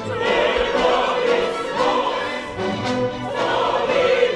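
Opera chorus singing with full orchestra accompaniment.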